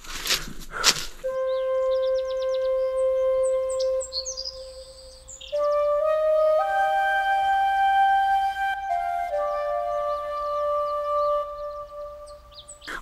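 Background music: a flute playing long, held notes that step to new pitches a few times, with birds chirping high and briefly early on.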